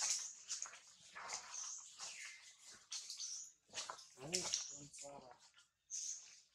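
Macaques calling: a run of short, high-pitched squeaks, with a brief lower-pitched call about four seconds in.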